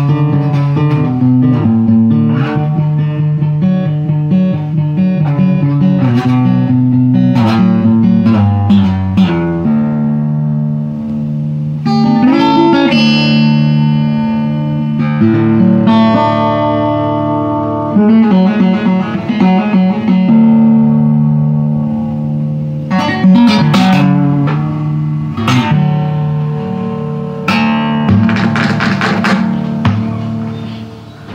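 Solo acoustic guitar playing an instrumental passage: picked notes and ringing chords, with a few sharp strummed chords in the later part, dying away at the very end.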